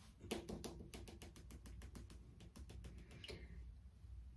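Faint, quick run of small clicks and ticks, several a second, as a plastic tub of body scrub is handled and turned over in the hands.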